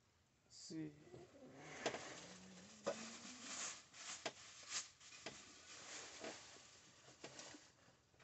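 Faint handling noises: scattered light knocks and clicks as a glass coffee carafe is fetched from down beside the chair, with a low wavering sound in the first few seconds.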